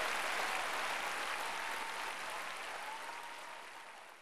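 A large audience applauding, the clapping dying away gradually.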